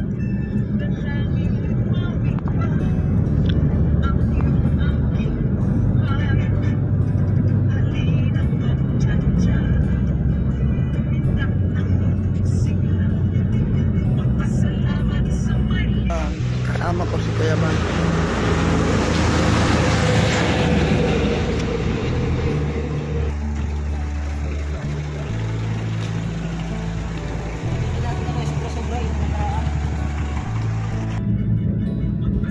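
Road and wind noise from riding in a moving vehicle, with music under it. About halfway through, the noise turns brighter and hissier.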